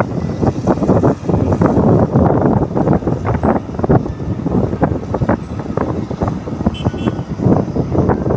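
Loud, irregular wind buffeting on the microphone with road noise from an electric scooter riding at about 40 km/h, gaining speed slightly.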